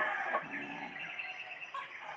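Chickens calling, with a rooster's crow trailing off over the first second; a short knock right at the start.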